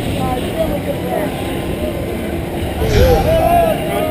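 Scattered voices of a dragon boat crew calling and chatting over a steady low rumble of wind and water noise, with a louder low thump about three seconds in.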